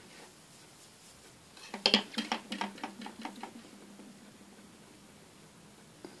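A quick cluster of knocks and clicks from a plastic make-up powder compact being handled, about two seconds in, then a faint low hum.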